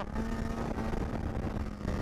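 Polaris SKS 700 snowmobile's two-stroke engine running steadily under way on the trail, its pitch stepping up slightly just after the start and then holding even.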